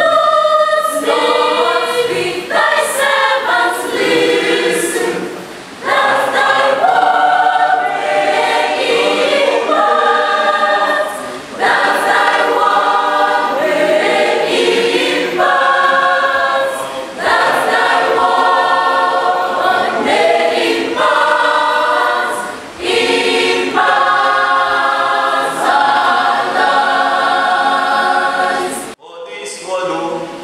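A choir singing, in phrases of about five to six seconds with short dips between them; the singing breaks off just before the end.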